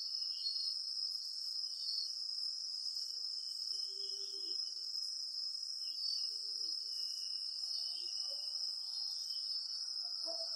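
Crickets trilling without a break, a steady high-pitched buzz.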